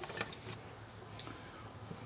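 Faint low background hum with a few light clicks, mostly in the first half second.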